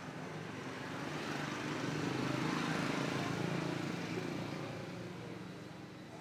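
An engine passing by: its sound swells steadily to a peak about halfway through and then fades away.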